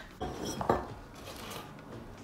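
Light knocks and clinks of baking utensils on a wooden worktop while biscuit dough is being rolled out and cut, two of them about a fifth and three quarters of a second in.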